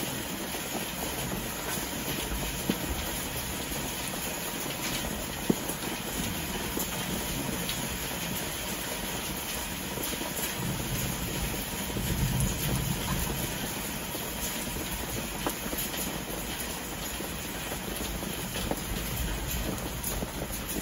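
Steady rain falling on a garden and patio, with a few faint drips, a single sharp tap about five seconds in, and a brief low swell about twelve seconds in.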